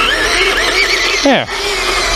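Whine of the SG1203 Ripsaw RC tank's small brushed electric motors and gear trains as it drives across grass, the high pitch wavering up and down as throttle and steering change, over a steady lower hum.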